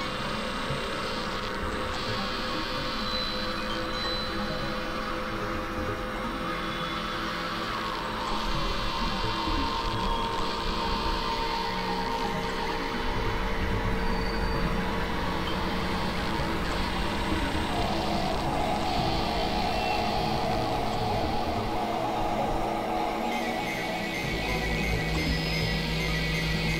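Experimental electronic drone-and-noise music: a dense, noisy texture with held synth tones. A low hum swells in about a third of the way through, and near the end the texture shifts to new steady tones.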